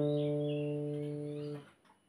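Acoustic guitar: a single plucked low note rings and fades slowly, then is damped about a second and a half in.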